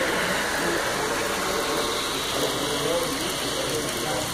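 Model diesel passenger train running along layout track under a steady din of background crowd chatter in an exhibition hall.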